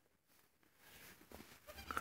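Near silence for the first second, then faint rustling and, at the very end, the start of a high wavering bleat from a day-old pygmy goat kid.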